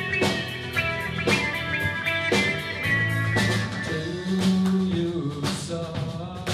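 Live rock band playing an instrumental passage: electric guitars holding notes over bass and drums, with a strong beat about once a second.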